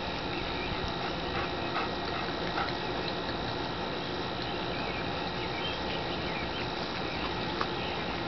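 Young Weimaraner puppies making faint, short squeaks over a steady background hiss, with a small click near the end.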